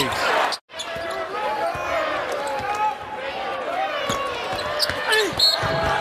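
Live basketball play: sneakers squeaking on the hardwood court in short chirps and a basketball bouncing, over crowd noise in the arena. The sound drops out for an instant just over half a second in, at an edit.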